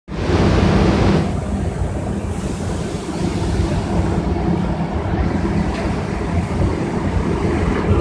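Belt conveyor of an automatic weighing machine running, with a steady motor hum and rumble as flat cardboard boxes ride along it. A louder hissing noise sits over it for about the first second, then eases off.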